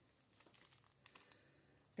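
Near silence: room tone with a few faint, scattered rustles and ticks, like light handling of packaging on a soft blanket.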